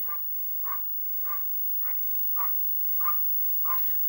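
A dog barking faintly in a steady, regular series, about seven short barks roughly every half second.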